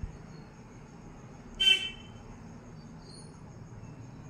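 A brief high-pitched toot, like a horn, about one and a half seconds in, over a faint steady low hum.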